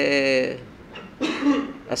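A man briefly clears his throat, a little over a second in.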